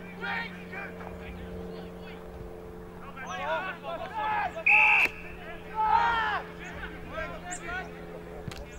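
Players shouting during an Australian rules football contest. A short, sharp blast of an umpire's whistle comes about halfway through and is the loudest sound, all over a steady low hum.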